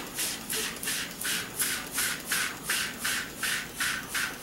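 A hand-held trigger spray bottle squirting onto a watercolour wash in quick repeated pumps. Each pump is a short hiss, about three to four a second.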